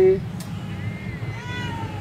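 A domestic cat meowing: one drawn-out meow starting a little under a second in, arching and falling slightly in pitch as it ends.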